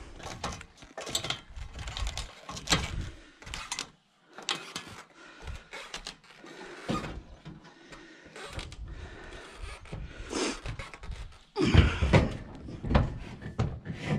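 A person climbing an aluminium ladder and stepping onto a metal-tile roof: irregular knocks, clanks and footfalls on the rungs and the steel sheets, loudest in a cluster about twelve seconds in.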